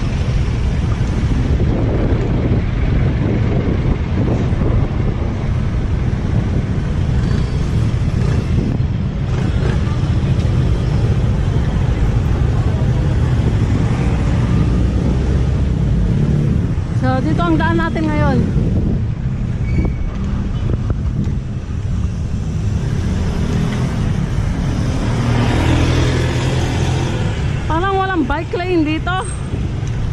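Steady low rumble of wind on the microphone mixed with street traffic, heard while riding a bicycle through city streets.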